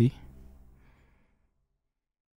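A man's voice trailing off into a short exhaled breath or sigh that fades away over about a second and a half, followed by dead silence.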